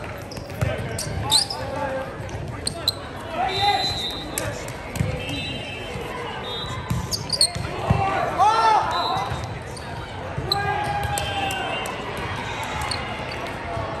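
A volleyball rally on a gym court: the ball struck several times with sharp smacks, sneakers squeaking on the hardwood floor, and players and spectators calling out, echoing in a large hall.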